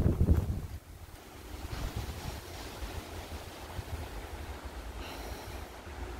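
Gusty wind buffeting the microphone, loudest in the first second, with the rustle of a frost-cloth cover being pulled off the tree.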